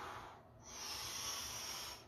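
A man breathing hard through his open mouth, pushing the air out and sucking it back in: one rush of air fades about half a second in, then a louder, longer one follows.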